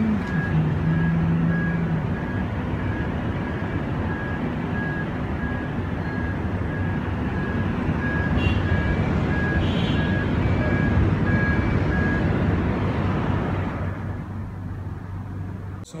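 Steady city traffic noise heard from high above the streets, with a faint high beep repeating about twice a second that stops near the end.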